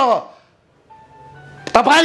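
A man speaking forcefully in Nepali breaks off. In the short pause a faint sequence of steady electronic tones at a few different pitches sounds, over a low hum. He starts speaking again near the end.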